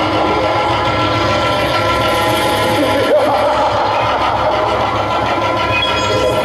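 Harmonium holding sustained, steady chords for devotional folk music, with a voice wavering briefly about halfway through.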